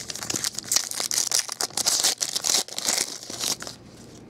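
Foil trading-card pack wrapper being torn open and crinkled by hand: a dense, crackly rustle full of sharp ticks that stops just before the end.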